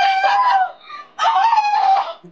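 A high-pitched whining wail from a person's voice, in two long, drawn-out notes with a short break between them, like mock crying.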